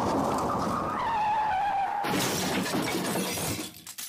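Car tyres screeching in a skid, a squeal sliding down in pitch, then a sudden crash with glass shattering about two seconds in that dies away near the end.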